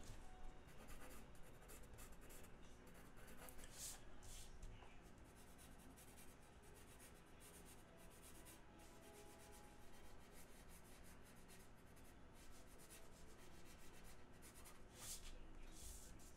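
Faint scratching of a non-photo blue pencil sketching on illustration board, many short quick strokes one after another, with a few sharper strokes near the start and near the end.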